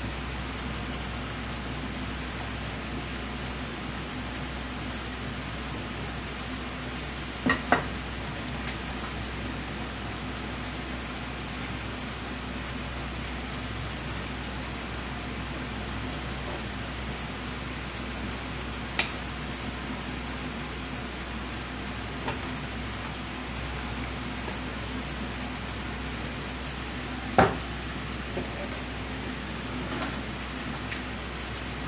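Steady drone of kitchen ventilation with a low hum, broken by a handful of sharp clinks of ceramic bowls and utensils as broth is served from a wok into the bowls: a quick double clink about a quarter of the way in, and the loudest clink near the end.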